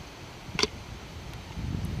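Wind buffeting the microphone as a steady low rumble, with one sharp click a little over half a second in.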